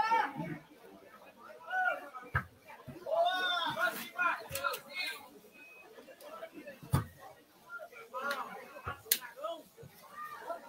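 Faint voices calling out in short bursts, with a few sharp knocks, the loudest about seven seconds in.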